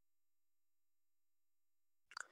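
Near silence: the audio is gated to digital quiet, with no audible sound.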